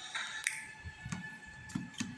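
A few short, sharp clicks about half a second apart, the first the loudest, over faint low background noise.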